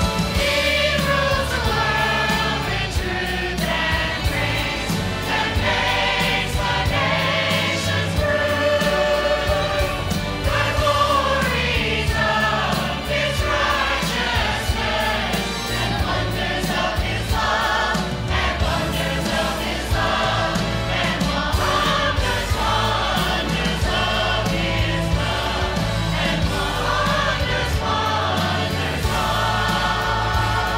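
Church choir singing with instrumental accompaniment, the voices holding long notes over a continuous bass line.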